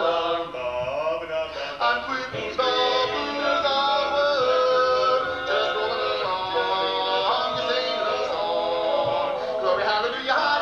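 Barbershop quartet of four men singing a cappella in close four-part harmony, with chords held and shifting together.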